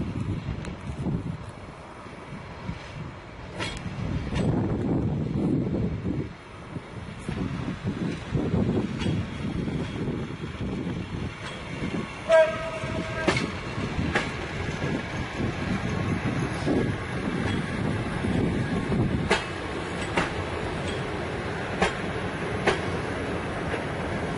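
Passenger carriages rolling slowly during shunting, a steady rumble with irregular wheel clicks over the rail joints. A short locomotive horn blast sounds about twelve seconds in and is the loudest sound.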